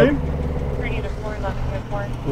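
A car engine idling, a steady low hum heard inside the cabin, under faint voices.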